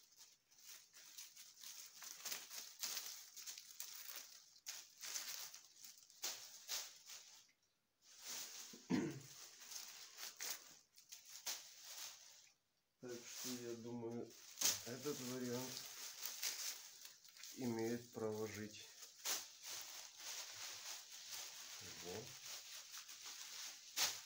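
Leaves and twigs of dried birch branches rustling and crackling as gloved hands strip the leaves off the stems, in many quick scratchy strokes.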